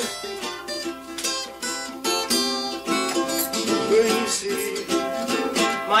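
Plucked acoustic string instruments playing a quick melody, a run of bright notes in close succession.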